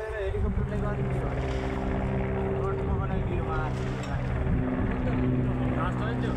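Mi-17 transport helicopter flying overhead with a helicopter slung beneath it: a steady drone of rotor and engines, with people's voices talking over it now and then.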